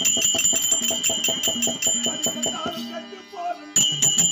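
Live Tamil folk-drama music: fast, even percussion strikes, about seven a second, with bright ringing bells over a sustained low tone. The beat breaks off for about a second near the end, with a voice heard in the gap, then starts again.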